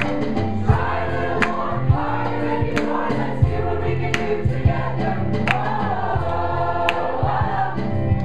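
Mixed choir of women and men singing in harmony, with sustained low notes underneath. Sharp percussive hits punctuate the singing every second or so.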